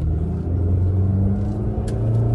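Maruti Suzuki Baleno's 1.2-litre four-cylinder petrol engine pulling under acceleration, heard from inside the cabin, its note edging up in pitch in the second half. It is the engine noise in the cabin that the driver finds a little louder than he expected. A short sharp click comes just before the end.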